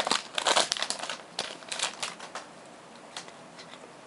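Foil booster-pack wrapper of a Pokémon EX Dragon pack crinkling as it is handled and opened: a quick run of sharp crackles for the first two and a half seconds or so, then dying down to faint rustles.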